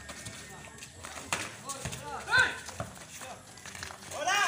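Players and spectators calling out during a pickup basketball game, with one loud shout about two seconds in. Scattered knocks of the basketball and feet on the concrete court.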